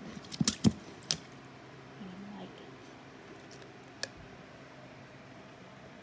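Several sharp wooden knocks and clacks in the first second as the dasher and wooden lid of a butter churn are worked and lifted off the crock, then one more click about four seconds in.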